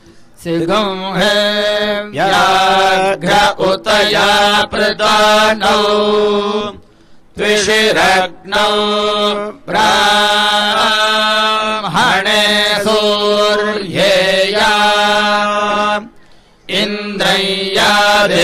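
Vedic Sanskrit mantras chanted in a steady recitation tone, with two short breaks for breath, about seven seconds in and again near the end.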